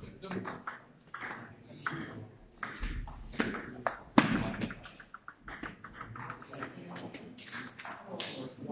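Table tennis rally: the celluloid ball clicking off bats and table in quick succession, with the loudest hit, a forehand, about four seconds in.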